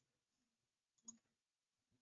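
Near silence with a single faint, sharp click about a second in: the click that advances the presentation to the next slide.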